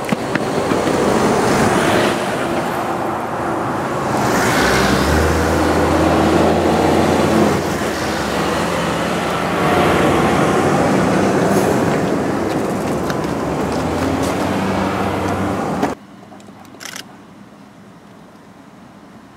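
Heavy tractor-trailer on a low-bed trailer loaded with a tram car drives past close by, with its diesel engine rumbling and tyres loud on the road, loudest through the middle as it goes by. About 16 seconds in, the sound cuts off abruptly to a faint background hum.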